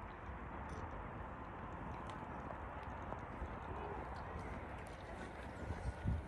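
Footsteps of a person walking, over a steady background noise.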